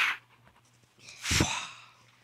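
A person's breathy exhale, like a sigh, about a second in, after a short breath right at the start.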